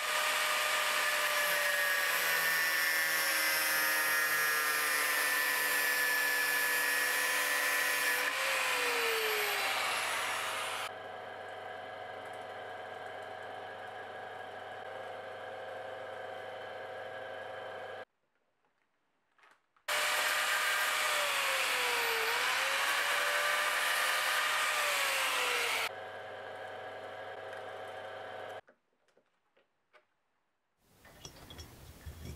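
Small metal lathe running with a part spinning in the chuck while abrasive cloth is pressed against it: a loud hissing rasp over the motor's steady whine, in two spells. Between them the whine carries on alone and more quietly, and it dips briefly in pitch a few times. The sound drops out about two-thirds of the way in and again near the end.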